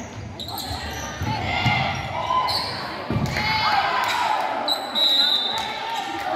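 Indoor volleyball rally in a gymnasium: the ball being struck, sneakers squeaking on the hardwood court, and players calling out, all with hall echo.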